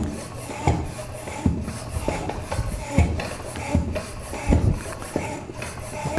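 Floor pump being worked by hand to inflate a road bike's inner tube toward 120 psi: about eight regular strokes, one roughly every three-quarters of a second.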